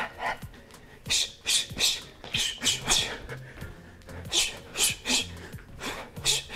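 A boxer's sharp hissing exhales through the teeth, one with each shadowboxing punch, coming in quick pairs and threes about a third of a second apart.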